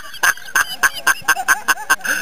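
A man laughing hard and breathlessly in quick, even pulses, about six or seven a second.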